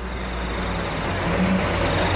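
Road traffic: a vehicle's engine and tyres passing close by, the noise growing steadily louder.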